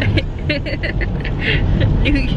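Steady low road noise inside a moving minivan's cabin, with a woman laughing and voices over it.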